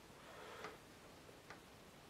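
Very quiet: a faint brushing swish ending in a light tick, then a second light tick about a second later, from a watercolour brush working paint in the palette.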